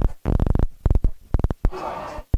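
A quick, irregular run of sharp clicks and thumps, several a second.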